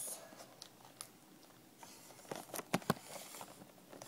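Handling noise in a quiet room: a few faint knocks and sharp clicks, bunched together about two and a half to three seconds in, as the camera and the book are moved against each other.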